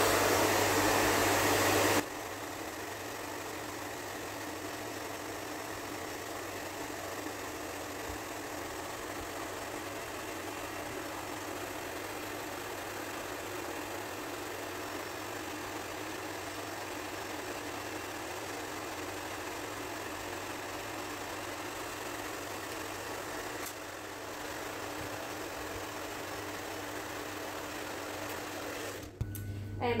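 Handheld electric hairdryer blowing hot air onto melamine film to soften its glue so the film lifts off a cabinet door. It is loud for the first two seconds, then drops suddenly to a lower, steady blow, and cuts off near the end.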